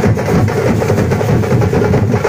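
A troupe of drummers beating large frame drums and smaller drums with sticks, a loud, dense, unbroken drumming rhythm.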